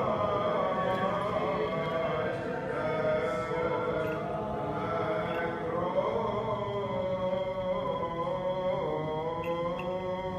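Byzantine chant of the Greek Orthodox liturgy: a man chanting a slow, unbroken melody of long held notes that slide gently up and down.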